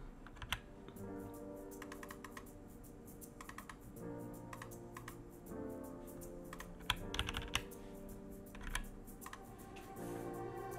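Clicking and typing on a computer keyboard: scattered taps, with a short quick run of keystrokes about seven seconds in. Soft background music plays underneath.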